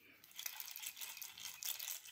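Plastic baby rattle toy shaken: a fast, continuous clatter of beads that starts about a third of a second in and runs for under two seconds.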